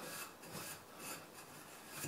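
A clean cloth rag rubbing over a sanded mahogany and spotted-gum goblet in faint, repeated strokes, wiping off sanding dust before the polyurethane finish.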